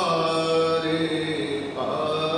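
Sikh kirtan: a male voice singing long held notes of a gurbani shabad over harmonium, with a short break and a new note near the end.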